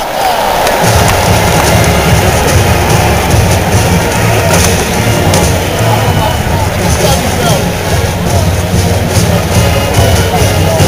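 College marching band playing in a football stadium, its low brass coming in strongly about a second in and carrying a steady bass line, over crowd noise from the stands.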